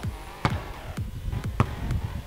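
A basketball coming down after a jump shot and bouncing on stone paving slabs, four knocks that come quicker as it settles, with faint music underneath.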